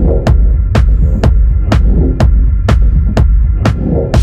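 Techno track in a stripped-down stretch: a heavy sustained bass under a steady synth drone, with a sharp click-like percussion hit about twice a second.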